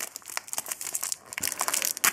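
Foil wrapper of a Match Attax trading-card pack crinkling and tearing as it is pulled open by hand, in irregular short crackles.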